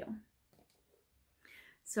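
A pause in a woman's speech: a word trails off at the start, then about a second of near silence and a faint sound before she starts speaking again at the very end.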